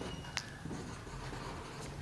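Marker pen writing on a whiteboard: faint scratchy strokes, with a short squeak and a light tap of the tip against the board early on.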